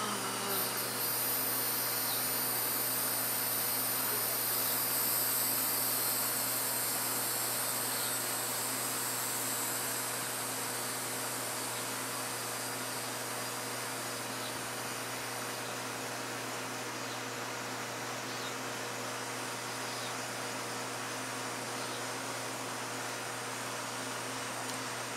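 A steady low hum with a high, hissing buzz over it. The buzz fades about two-thirds of the way through.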